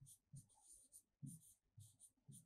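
Marker pen writing on a whiteboard: short, quiet scratchy strokes, about five in two seconds, with one longer stroke near the middle.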